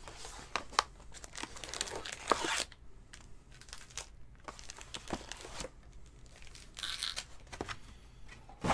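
A sealed trading-card box being torn open: the plastic wrap and cardboard are ripped and crinkled in scratchy bursts with sharp clicks through the first two and a half seconds, then more briefly twice later.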